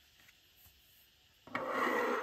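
Sheet of paper sliding across a wooden desk: one rubbing sweep of about a second, starting suddenly about a second and a half in.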